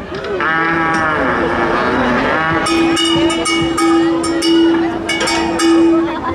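A long, low horn-like tone held steady for the last three seconds or so, after a pitched call that rises and falls in the first two seconds; sharp clicks and claps sound over the held tone.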